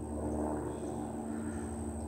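A steady, faint engine drone, a low hum with several steady tones above it that swells slightly at first.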